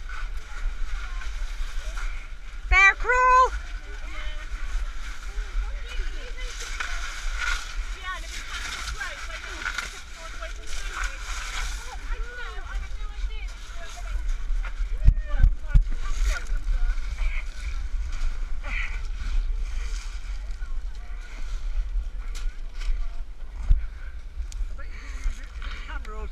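A person crawling on hands and knees over loose pebbles in a low tunnel: continuous scraping and crunching of stones under hands and knees, with a few heavy knocks against the camera around the middle.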